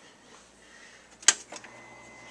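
A single sharp click, like a switch being flipped on, a little past halfway, with two softer ticks just after; a faint steady high whine then begins as the appliance comes on.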